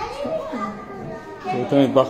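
A young child's high voice talking, in two short stretches: one at the start and another about a second and a half in.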